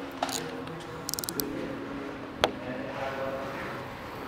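A quick run of light, sharp clicks about a second in and one louder sharp click about halfway through, from tools being handled, over faint steady held tones.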